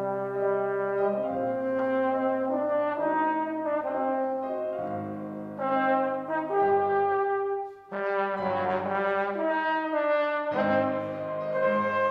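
Trombone playing a concert solo line of held notes that change pitch every second or so. There is a brief break about eight seconds in, then the playing resumes.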